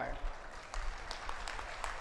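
Crowd applauding: an even patter of many hands clapping, fairly faint, after the last word of a man's speech at the very start.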